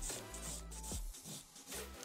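Hand nail file rasping across an acrylic nail in quick short strokes, fading out after about the first second, over soft background music.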